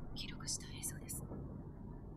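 Hushed, whispery speech for about the first second, over a steady low noise bed.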